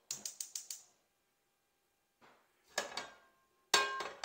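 Gas range burner igniter clicking rapidly, about six sharp clicks in the first second, as the burner is lit under a pan. Then two clanks of metal cookware, the second leaving a short metallic ring near the end.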